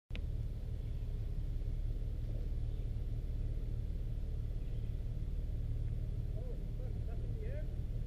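Nissan Xterra 4x4 engine running steadily at low revs, an even low drone that holds without rising or falling. Faint voices come in near the end.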